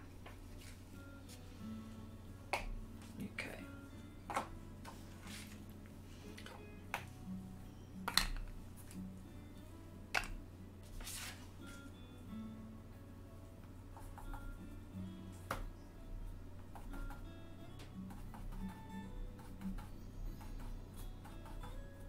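Scattered sharp clicks and light taps of plastic PanPastel pans being picked up, set down and worked with a pastel tool while greens are mixed, about a dozen in all, over a steady low hum.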